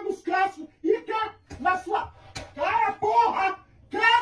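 Speech only: a woman shouting in short, angry bursts.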